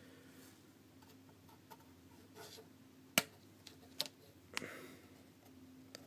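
A few sharp, light clicks of a plastic model-kit sprue and hobby nippers being handled, the loudest about three seconds in and two more in the following second and a half.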